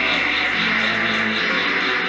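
A rock band playing live: an electric guitar over bass and drums, with a steady high beat about four times a second.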